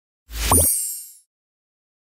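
Short logo sound effect: a deep thump with a quick rising pop and a bright shimmer on top, fading out within about a second.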